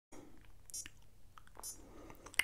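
Quiet room with a few faint short clicks and rustles, the clearest just under a second in and again past the middle.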